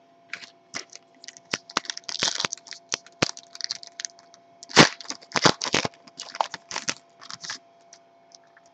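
A foil baseball card pack crinkling in the hands and being torn open: a long run of sharp crackles, loudest about five seconds in.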